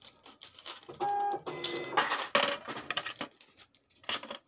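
Small clicks and clatter of gold rings being handled over a plastic display tray, with a brief held tone about a second in and a louder burst of clatter just after it.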